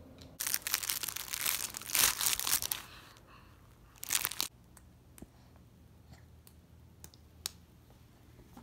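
Loud crinkling and rustling right at the microphone from a soft baby toy being handled against it, in a run of bursts lasting about two and a half seconds, then one short burst about four seconds in, followed by a few faint clicks.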